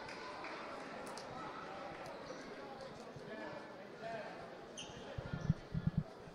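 A handball bouncing on the indoor court floor, several quick low thumps near the end, over the low murmur of a sports hall crowd and distant voices.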